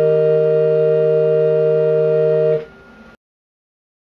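Homebuilt pipe organ holding the final chord of a chorale prelude, then releasing it about two and a half seconds in. A faint tone lingers for a moment before the sound cuts off.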